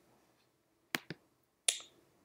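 Computer mouse clicks while editing a document: two quick clicks about a second in, then another short click near the end.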